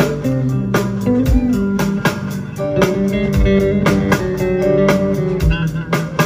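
Live band playing an instrumental passage: electric bass and guitar over drums keeping a steady beat.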